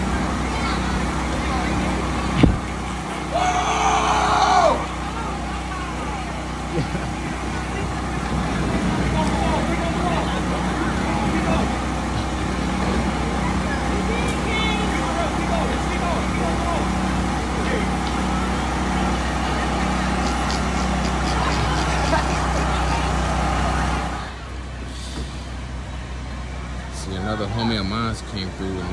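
A steady low motor hum with people's voices around it, and a brief high-pitched call about four seconds in. The hum cuts off sharply about four seconds before the end, leaving quieter street sound.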